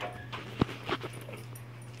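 Two light knocks about a third of a second apart, over a steady low hum.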